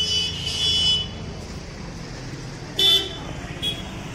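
Street traffic with vehicle horns: a horn sounds in the first second and a short, loud honk comes about three seconds in, over a steady low traffic rumble.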